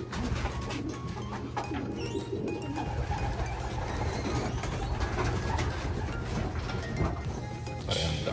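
Racing pigeons cooing in a loft, over a steady low hum.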